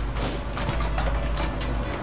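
Background music, with short clicks and crackles from hands kneading slime in aluminium foil pans.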